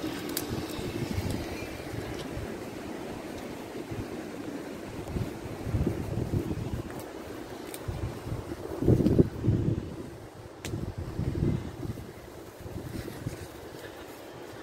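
Low rumbling wind and handling noise on the microphone, with louder low buffets about six, nine and eleven seconds in and a few faint clicks.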